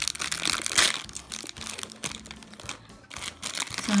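Crinkly plastic wrapper of an L.O.L. Surprise pet pouch crinkling and crackling as fingers pull it open. Irregular crackles, busiest in the first second, thinning in the middle and picking up again near the end.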